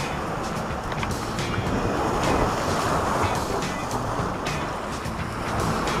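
Sea surf breaking and washing over rocks at the shoreline, a steady rush of water with some wind on the microphone.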